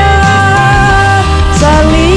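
A woman singing a Sundanese pop song over a full backing track, holding one long steady note, then starting a new phrase near the end.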